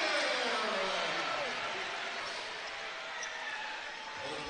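Basketball arena crowd cheering and shouting after a made and-one basket, the noise dying down over a few seconds.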